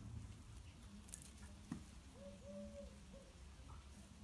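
Faint footsteps pattering on gravel and dry fallen leaves, with a single sharp click partway through.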